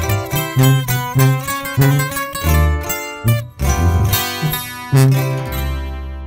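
A sierreño-style band with tuba plays the instrumental ending of a corrido. Quick plucked acoustic guitar runs go over a tuba bass line, and the band closes on a final chord about five seconds in that rings out.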